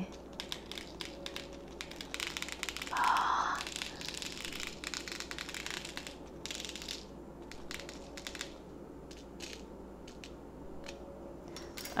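Tiny hard candy sprinkle beads poured from a foil packet into a clear plastic mold tray, landing as a long irregular run of light clicks. A short, louder burst of noise comes about three seconds in.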